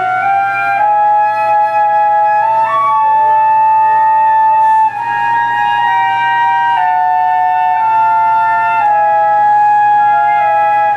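Two concert flutes playing a slow duet of long held notes in close harmony, each line stepping from note to note. Their tones interact, which the players say is sometimes heard as a buzzing or a ghostly third tone.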